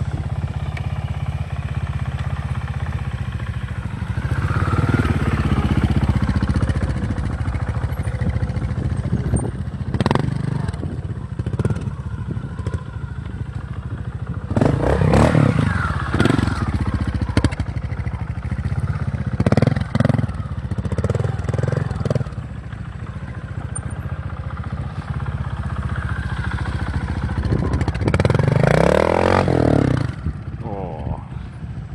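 Honda RTL four-stroke single-cylinder trials motorcycle running at close range, mostly at a low steady idle, with several short throttle blips in the middle. The engine revs up in a longer rise near the end.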